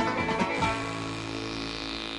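Closing bars of a banjo-led country-style TV theme song: a few quick strums, then a held chord slowly fading away.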